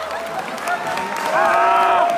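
Concert crowd applauding and cheering as a song ends, with shouting voices that swell louder about a second and a half in.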